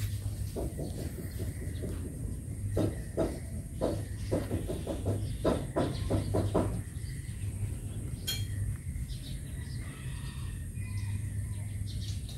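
A dog licking and nibbling at its paw and leg: a run of quick, irregular wet mouth sounds through the first seven seconds, then it goes quieter, with one sharp click a little past eight seconds.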